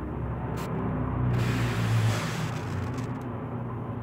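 A low rumble over a steady hum, swelling about a second in and easing off after two seconds, with faint clicks.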